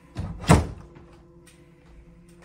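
A wooden interior door shutting: two thuds about a third of a second apart, the second louder.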